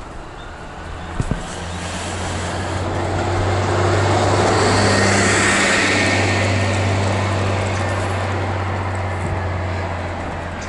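A bus passing on the road: a steady low engine drone with tyre noise that swells to a peak about halfway through, then slowly fades. Two sharp knocks about a second in.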